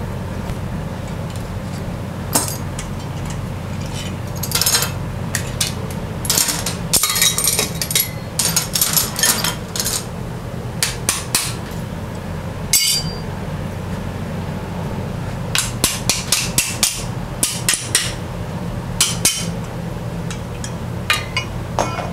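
Locking pliers and C-clamps being released from a steel-plate babbitt mould fixture and dropped on a steel bench: irregular sharp metallic snaps, clinks and clanks in clusters, over a steady low shop hum.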